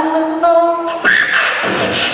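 Beatboxing into a microphone, amplified through stage speakers: a held pitched vocal note for about a second, then short, sharper vocal beat sounds.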